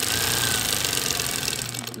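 Singer 281-1 industrial sewing machine running under the foot pedal, stitching through fabric: a rapid, steady mechanical rattle that starts abruptly and stops about two seconds later.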